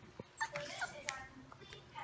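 Young pit bull puppies, about five weeks old, giving a few short high-pitched whimpers and yips as they play-wrestle, with a faint tap near the start.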